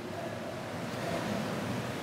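Steady, even hiss of room noise with no distinct event.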